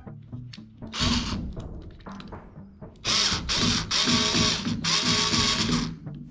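Ozito cordless screwdriver driving screws to fix a curtain bracket to the wall: a short run about a second in, then four runs in quick succession from about three seconds on.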